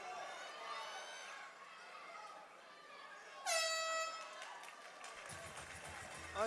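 Cage-side horn sounding once, a single steady blast of about a second that starts suddenly, marking the end of the bout's final round, over faint crowd noise.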